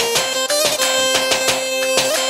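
Live Balkan dance-band music: a reedy, nasal lead melody holds long notes with quick ornamental bends over a steady drum beat.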